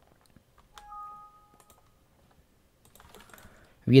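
A short electronic two-tone chime, like a computer's alert sound, lasting about a second; it sounds a little under a second in. A few faint clicks follow near the end.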